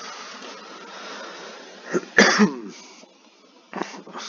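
A man coughs briefly about two seconds in, over a steady hiss.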